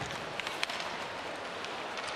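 Ice hockey arena sound: steady crowd noise and skating on the ice, with a couple of sharp stick-and-puck clicks a little under a second in.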